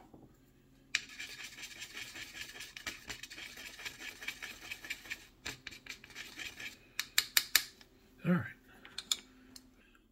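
A wooden stir stick scraping and stirring oil paint in a well of a metal paint palette, mixing a pin wash: about four seconds of fast, steady scratching, followed by a quick series of sharp taps against the palette.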